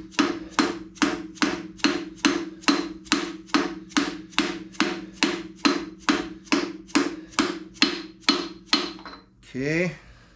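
Rapid, even mallet taps on a large socket, about three a second, each with a short metallic ring, driving a timing chain sprocket onto the crankshaft snout of a small-block Chevy 350. The tapping stops about nine seconds in, with the sprocket seated.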